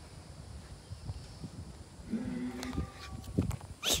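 An animal's call: a single pitched cry about a second long, starting about two seconds in, over low rustling and bumps.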